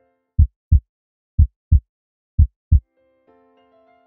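Heartbeat sound effect: three deep double thumps, lub-dub, about one a second. Soft keyboard music comes in near the end.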